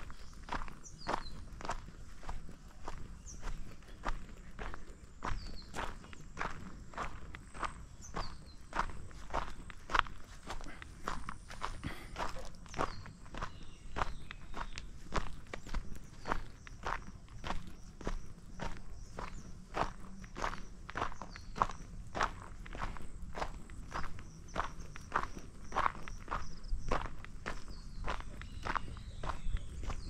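Footsteps of a person walking at a steady pace on a dirt road, about two steps a second.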